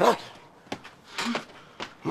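A woman's spoken word ends, then a few faint footsteps on a hard indoor floor as she walks away, with a brief low vocal sound between them.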